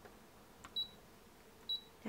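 Two short, high touchscreen beeps from a Brother ScanNCut cutting machine, about a second apart, as its screen is tapped with a stylus. There is a faint tick just before the first beep.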